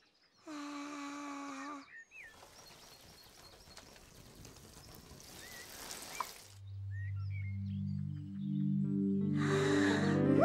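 Water hissing out of a watering can's rose for a few seconds, slowly getting louder, with birds chirping faintly. It follows a short held musical tone, and then a low synthesized melody climbs upward in steps as a magical growing effect.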